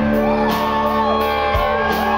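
Live rock band playing loudly, with electric guitars and drums, and shouting over the music.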